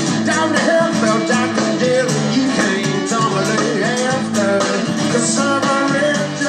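Live rock band playing: a strummed acoustic guitar, electric bass and drum kit in a dense, steady groove, picked up off a television's speaker.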